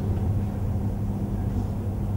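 A steady low hum with rumble underneath, unchanging throughout, in a pause between speech.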